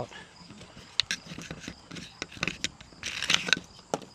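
Clicks and rattles of a Fly Wing FW450 RC helicopter's battery tray being pulled out of its frame by hand: a sharp click about a second in, then a cluster of clicks near the end.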